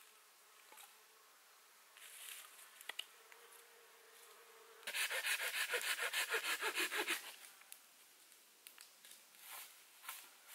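Fast rasping scrape of a knife blade on wood, about ten strokes a second for roughly two seconds in the middle. Before it, a faint steady buzz.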